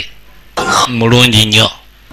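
A man's voice speaking one short phrase, starting about half a second in and stopping shortly before the end.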